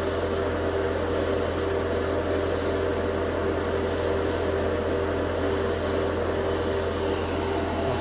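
Airbrush spraying chrome paint in a steady hiss that drops out briefly several times, over the constant hum of a spray-booth fan running on low.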